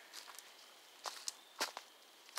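Campfire crackling: a handful of irregular sharp pops and snaps from burning wood, the loudest about one and a half seconds in.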